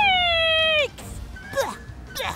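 A cartoon character's high-pitched voice lets out one long held cry that sags slightly in pitch and stops just under a second in. It is followed by a couple of brief swishing sound effects.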